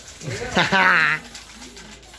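A person's voice making one short, wavering, warbling cry about half a second in, lasting under a second.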